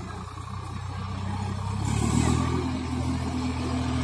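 Swaraj 744 tractor's diesel engine running as the tractor drives across the field, its note rising in pitch and getting louder about two seconds in as it speeds up.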